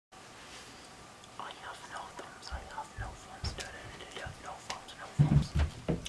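Quiet whispering, with a few soft clicks and several low thumps near the end.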